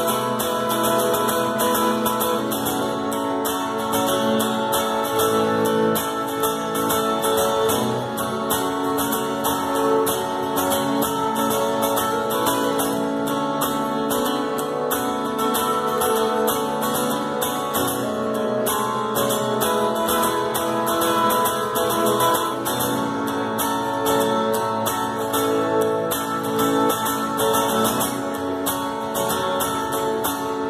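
Acoustic guitar strummed in a steady rhythm, an instrumental passage of a song.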